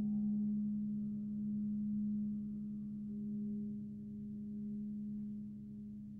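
A low, sustained ringing tone from a struck percussion instrument in a contemporary piece for piano and percussion. It sounds at the very start and then rings on with slowly wavering loudness, gently fading.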